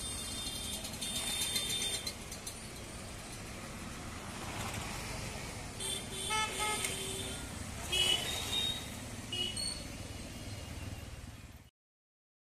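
Street traffic: a steady rumble of passing motorbikes and cars, with a few short vehicle-horn toots past the middle. The sound cuts off suddenly just before the end.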